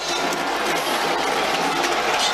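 Football stadium crowd cheering after a goal, a steady even roar of many voices.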